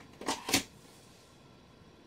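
Two brief scuffing handling sounds from a violin bow being handled and adjusted, in the first half-second.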